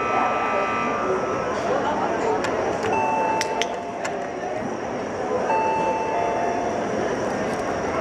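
Pebble Smart Doggie Doorbell's electronic chime, rung by a Doberman's nose touch: a two-note ding-dong, the second note lower, sounding twice about two and a half seconds apart. An earlier chime tone dies away about a second in, and crowd chatter in a large hall runs underneath.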